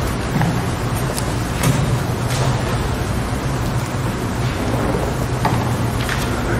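Steady, fairly loud room noise with a low hum, with a few scattered sharp clicks and knocks as string players set down a cello, a double bass and music stands.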